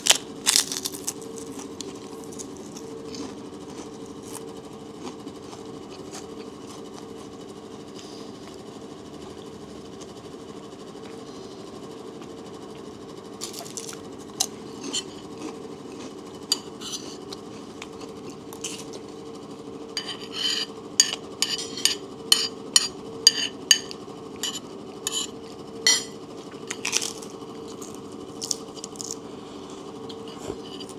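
A spoon clinking and scraping against a plate while eating, in scattered sharp clicks that come thick and fast in the last third. Near the start there is a brief crunch of a fried fish cracker (keropok) being bitten.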